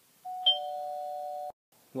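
A doorbell sound effect: two steady tones held together for about a second, with a higher ring joining near the half-second mark, then cut off abruptly.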